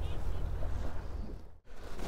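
Wind rumbling on the microphone over the wash of a choppy sea around a small boat, cutting out briefly about one and a half seconds in.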